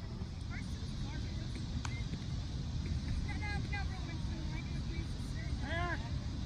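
Wind rumbling on the phone microphone over distant shouts and calls from players and spectators across a baseball field, with one louder call near the end. A single short click comes about two seconds in.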